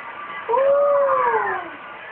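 A toddler's drawn-out wailing vocalisation, about a second long, rising and then falling in pitch.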